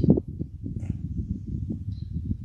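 Wind buffeting a microphone: a loud, uneven low rumble with a strong gust right at the start.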